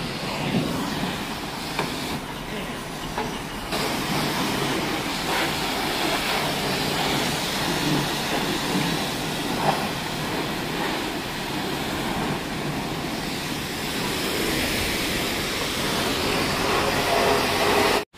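Steady hiss of a self-serve car wash's high-pressure wand spraying soapy water onto a car's hood and front bumper.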